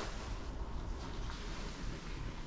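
Steady low background noise with a faint low rumble and no distinct event: quiet room tone.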